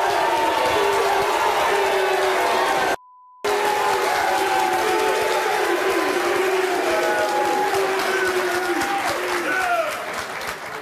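Studio audience applauding and shouting, many voices at once over the clapping. About three seconds in the sound cuts out for under half a second behind a faint steady tone: a censor bleep.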